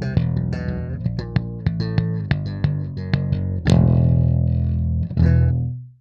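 Ernie Ball Music Man StingRay electric bass with an Aguilar pickup, played through a Darkglass Microtubes 900 head and DG410C cabinet: a quick, funky run of notes with sharp attacks. Two louder held notes follow in the second half, and the last is stopped short near the end.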